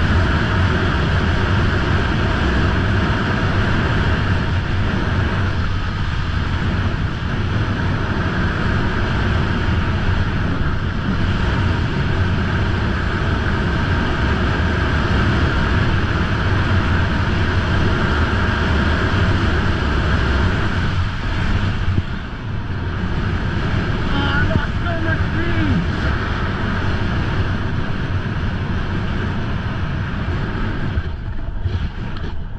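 Wind rushing over the microphone of a camera carried by a snowboarder at speed, with the board's base and edges scraping steadily over the snow. A brief voice cuts in about three quarters of the way through.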